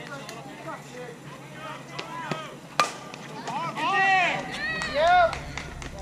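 A single sharp crack of a bat hitting a softball, followed by loud, excited shouting from several high young voices.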